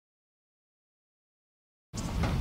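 Complete silence with no sound at all, broken only by noise cutting in suddenly at the very end.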